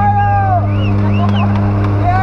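Steady drone of a jump plane's engines heard inside the cabin, with a man shouting a long drawn-out yell at the start and a fainter yell about a second in.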